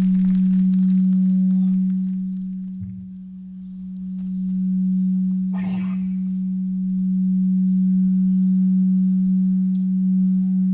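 A loud, steady low electric drone at one pitch from the band's stage amplification, fading about three seconds in and swelling back up. A brief clatter sounds near the middle.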